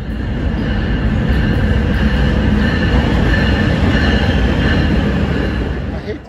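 Train running through a station, a loud steady rumble with a high steel wheel squeal held throughout, cutting off suddenly at the end.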